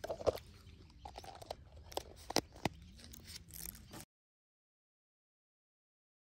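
Handling noise close to the microphone: a scatter of sharp clicks and taps. The sound cuts out abruptly into complete silence about four seconds in.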